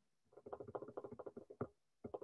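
Paintbrush scrubbing quick short strokes of paint onto a stretched canvas, a rapid scratchy patter of about ten strokes a second that starts a moment in and stops just before the end.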